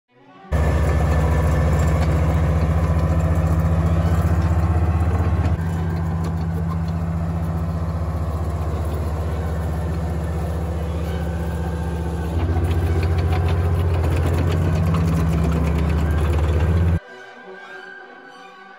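Tank engine running with a loud, steady, deep rumble. It drops in loudness about five seconds in, rises again a little past twelve seconds, and cuts off abruptly about a second before the end.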